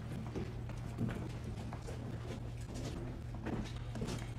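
Footsteps of hard boot heels on a hard floor: a few irregular knocks about a second apart, over a steady low hum.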